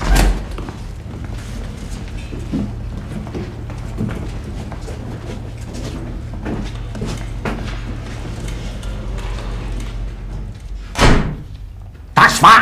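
Several people shuffling and walking out of a room over a low steady hum, with scattered faint knocks. There is a loud thud right at the start and another loud thud about a second before the end.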